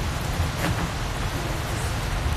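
Steady background noise picked up outdoors by a phone microphone: an even hiss over a low rumble typical of wind on the microphone.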